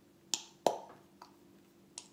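Two sharp knocks of hard objects about a third of a second apart, the second one louder with a short ring-out, then a fainter tap near the end, over a low steady hum.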